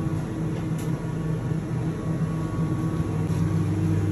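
Steady low mechanical hum of a commercial kitchen's extraction fans running.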